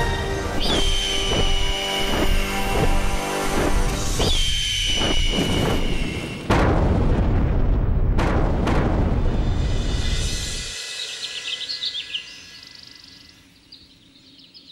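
Dramatic background music, then about six and a half seconds in a sudden loud explosion sound effect with a few sharp blasts that dies away over the next few seconds. Faint bird chirps near the end.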